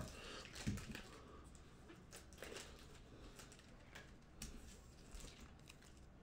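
Faint crinkling and scattered small clicks of a foil trading-card pack being opened by hand and its cards handled.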